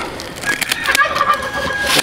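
A tom turkey gobbling, a fast warbling call starting about half a second in, with a few sharp snips of scissors cutting a turkey hen's wing feathers.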